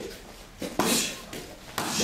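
Kicks landing on a hand-held kick paddle: two or three sharp slaps in quick succession near the middle.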